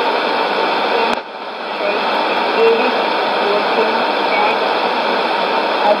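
Shortwave AM reception on a Sony ICF-2001D: steady static hiss with the faint voice of the S06s 'Russian Lady' numbers station reading number groups in Russian under it. A click about a second in, after which the hiss dips briefly before coming back.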